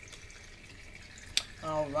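Tabletop water fountain trickling softly over stones, with a single sharp click about a second and a half in.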